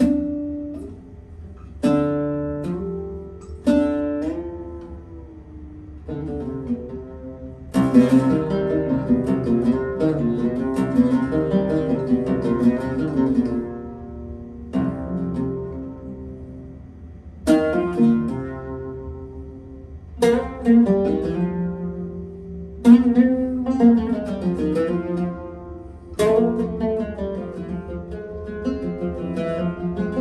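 Yildirim oud with a cedar soundboard and Kröschner strings played solo with a plectrum. It opens with single strongly plucked notes about two seconds apart, each left to ring, then moves into denser, faster runs, with more strong accented notes later on.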